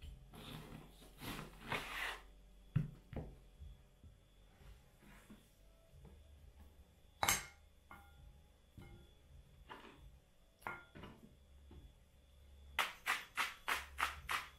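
A large knife cutting raw lamb rack into rib chops on a wooden cutting board: scattered soft cuts and knocks of the blade on the wood, with a sharper knock about seven seconds in. Near the end comes a quick run of strokes, about five a second.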